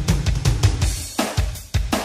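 Music led by a drum kit: repeated bass drum and snare hits with cymbals in a steady beat.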